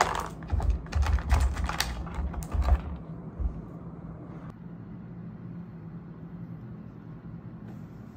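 Quick clicks and knocks of clear plastic storage containers and packaged supplies being handled and set down on a table for about the first three seconds, then a single click later on. Under it, a steady low hum.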